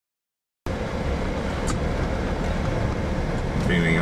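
Silence, then about two-thirds of a second in a vehicle's steady low rumble cuts in suddenly: engine and tyres travelling over a worn, potholed gravel road.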